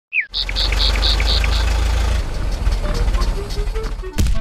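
Vehicle engine sound effect for a Lego camper van driving up: a steady low engine rumble that turns uneven about halfway through as it slows. A short falling whistle opens the sound, and six quick high chirps come during the first second and a half.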